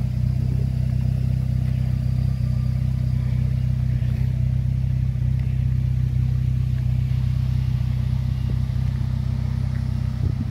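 Morgan Plus 4's Ford Duratec four-cylinder engine idling steadily through its stainless sports exhaust, a low, even drone.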